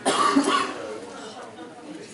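A woman laughing briefly into a handheld microphone: a short burst in the first half second or so that then trails away.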